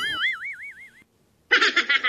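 Cartoon 'boing' sound effect: a wobbling tone that swoops up and wavers for about a second. After a short gap, a brief high-pitched, rapidly pulsing chattering effect starts near the end.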